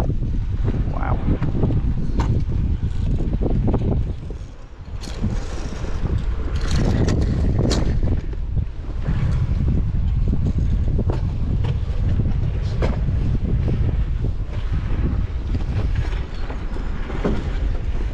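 Wind rumbling on the camera's microphone, with irregular footsteps and knocks on the walkway steps beside a roller coaster's lift hill. The rumble drops briefly about four seconds in.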